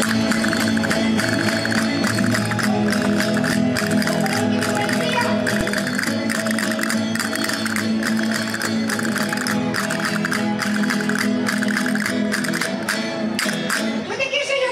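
Instrumental passage of Spanish folk dance music from La Mancha: guitars and other plucked strings playing, with dense castanet clicks running through it.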